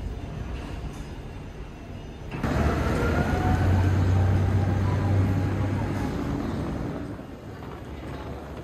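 A large engine running close by, with a low hum. It starts abruptly about two seconds in and fades away near the end.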